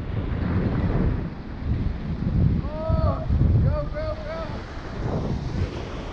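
Wind buffeting the microphone in gusts over surf breaking against jetty rocks. A series of short, arched, high calls comes in two clusters, about three and four seconds in.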